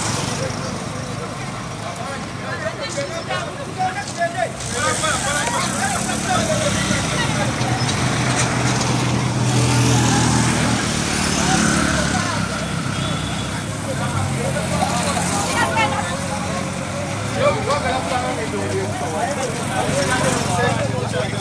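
Motorcycle engines passing along the road, the nearest loudest about ten seconds in, over the chatter and calls of a crowd of people.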